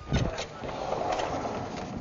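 Vertical sliding chalkboard panels being pushed along their frame: a steady rolling, scraping noise that starts about half a second in and runs on.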